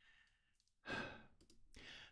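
A man breathing into a close microphone: a sigh about a second in, then a softer breath near the end.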